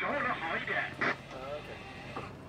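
Speech: a woman speaking English, over a steady low hum.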